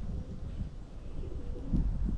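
A dove cooing low, over a steady low rumble.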